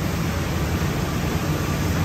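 Polar 176 ED paper guillotine running at rest, a steady low hum with an airy hiss.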